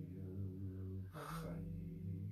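A voice intoning one long held tone, the vibrated chanting of a divine name used in Hermetic ritual meditation. About a second in, a sharp intake of breath briefly cuts through, and then the held tone goes on.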